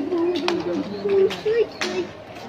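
A pigeon cooing: one low, wavering call lasting about a second and a half, with two sharp clicks during it.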